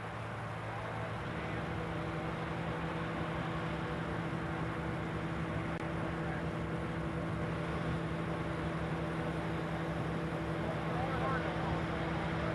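A steady mechanical drone with a constant low hum that holds unchanged throughout, and faint voices in the background near the end.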